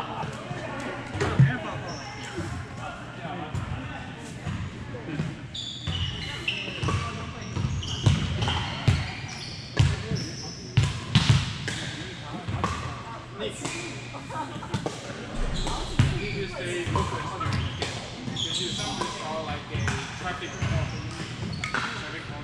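Volleyballs being hit and bouncing on a hardwood gym floor at an irregular pace, with short high-pitched squeaks and background voices, echoing in a large sports hall.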